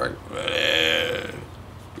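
A man's wheezy, rasping breath lasting about a second, an imitation of an asthmatic's heavy breathing.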